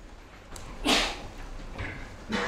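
A man's single short cough about a second in, sharp and noisy, with a smaller breathy sound just before the end.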